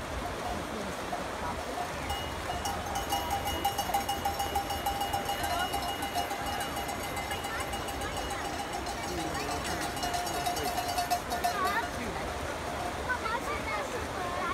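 A bell rung rapidly and steadily for several seconds, starting about two seconds in and stopping shortly before the end, over spectators' chatter.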